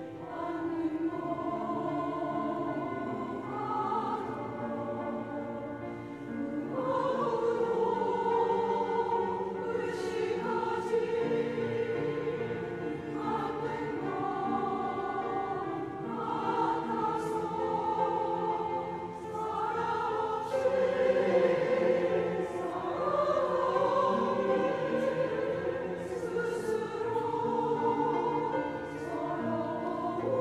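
Mixed church choir singing a slow anthem in Korean, holding long notes in smooth phrases.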